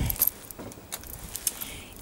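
Metal chain strap and clasp of a handbag clinking and clicking in a series of short, sharp clicks as the bag is handled and opened.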